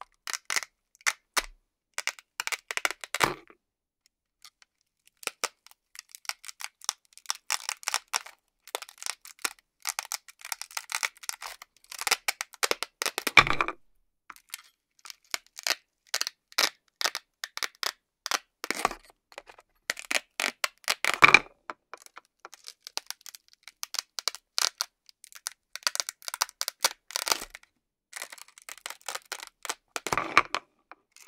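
Velcro (hook-and-loop) fasteners ripping apart in repeated crackly bursts as wooden toy fruits and vegetables are sliced apart with a toy knife. A few louder rips stand out among the softer crackling.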